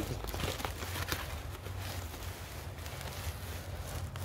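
Corrugated cardboard packaging being torn and crinkled by hand: irregular crackling and tearing, over a low steady rumble.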